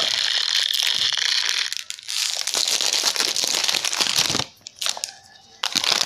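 Packaging crinkling as it is handled, a dense continuous crackle that stops abruptly about four and a half seconds in, followed by a few scattered clicks and rustles.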